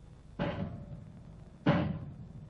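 Two heavy drum strokes in an orchestral film score, one shortly into the clip and a louder one near the end, each ringing out for about half a second.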